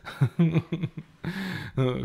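A man's voice in a few short, quiet snatches with pauses between them, softer than full speech.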